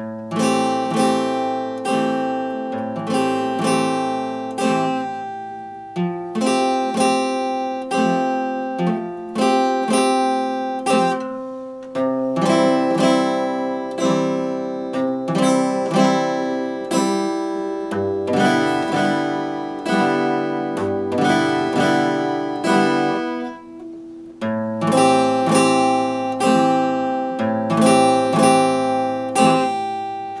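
Epiphone acoustic guitar strummed in a steady rhythm, its chords ringing on between strokes. It starts out of silence right at the beginning and eases off briefly about three quarters of the way through before the strumming picks up again.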